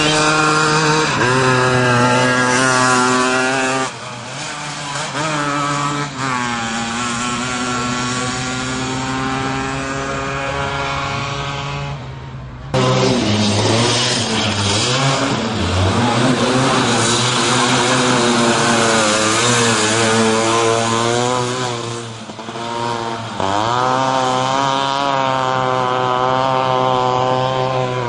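Small three-wheeled Piaggio Ape race engines revving hard, the pitch climbing and then dropping at each gear change. The sound changes suddenly about halfway, and a second Ape's engine revs up and shifts near the end.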